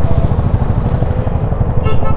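KTM Duke 390's single-cylinder engine running under way, its firing heard as a rapid, even low pulse, with wind rushing over the helmet microphone.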